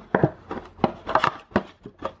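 Cardboard trading-card blaster box being handled and opened with gloved hands: a run of light knocks and scuffs, five or six in two seconds.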